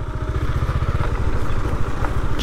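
Single-cylinder engine of a Bajaj Avenger 220 motorcycle running at low revs, heard from the rider's seat as a rapid, even low pulsing, with tyre and road noise from a rough dirt lane.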